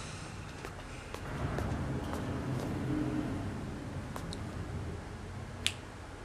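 A man snapping his fingers several times: sharp snaps about every half second at first, then two more spaced farther apart, the last one the loudest, over a low steady background hum.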